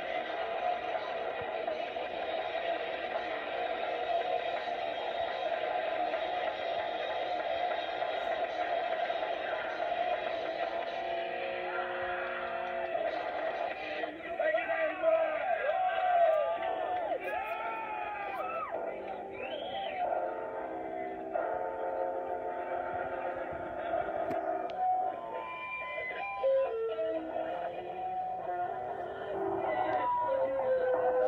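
Live band with electric guitar, played back from an old video through a TV speaker, thin and without highs. A sustained guitar tone is held for the first half, then swooping, sliding tones come in the middle.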